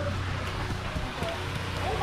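Bare feet running quickly across wet stone paving over a steady low hum.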